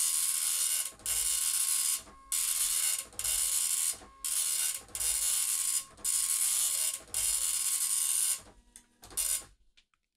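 Original Apple ImageWriter 9-pin dot matrix printer printing line by line, its print head sweeping across the page in about eight passes, roughly one a second with brief pauses between. The printing stops just over eight seconds in. The stuck pin has been freed by cleaning and the printer is working normally.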